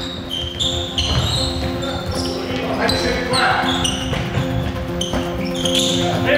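Handball training in a sports hall: sneakers squeaking sharply and often on the hall floor, a handball bouncing, and players calling out, all echoing in the hall.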